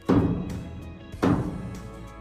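Two heavy thuds about a second apart: a hammer striking the wooden two-by solar-panel frame to knock it into final position, heard over background music.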